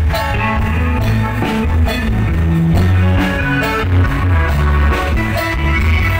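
Live band playing an instrumental passage with no singing: electric guitar to the fore over keyboard, bass guitar and drum kit, loud through the PA speakers.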